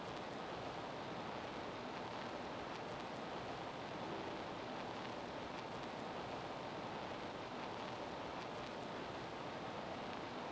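Steady, even hiss of an open microphone's background noise, with nothing else clearly heard.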